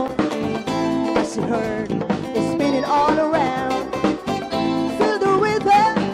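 Live band playing upbeat dance music: drum kit, electric guitar and keyboard, with a melody line bending in pitch about three seconds in and again near the end.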